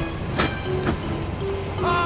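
Film fight-scene soundtrack: a steady low mechanical rumble under held music notes, with a sharp hit about half a second in and another near the end.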